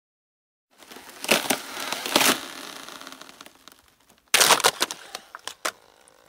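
Ice-cracking sound effects: a crackling rush begins about a second in with two sharp cracks and fades, then a louder run of sharp cracks comes near the end.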